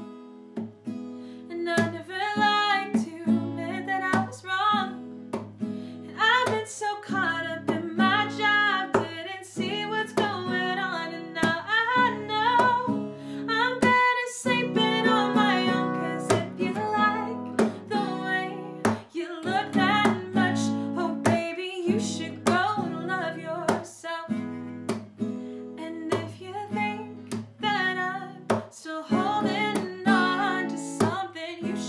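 A woman singing to a strummed Ibanez acoustic guitar, the strums steady and even throughout.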